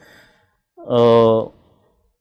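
A man's voice making one drawn-out hesitation sound, an 'uhh' held at a steady pitch for under a second, with short silences around it.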